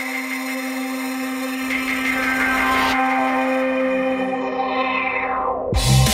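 Electronic dance music in a breakdown with no drums: a held synth note under layered tones, the treble closing off in a falling filter sweep over the last couple of seconds. Just before the end the full drum and bass beat with heavy bass drops in.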